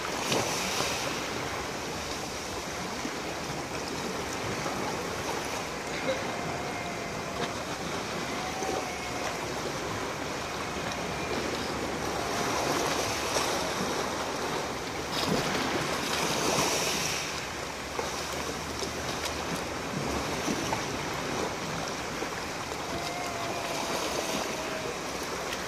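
Small sea waves washing in and out over a pebble beach, a steady hiss that swells a few times as larger waves come in.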